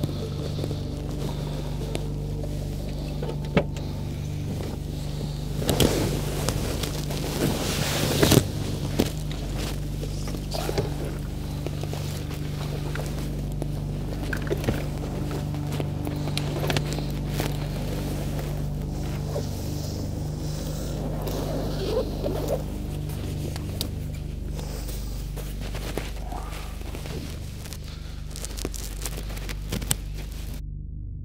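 A soft, sustained ambient music drone under the clatter and rustle of camera gear being handled in an open car boot, with scattered sharp clicks and a busier stretch of knocks and shuffling a few seconds in.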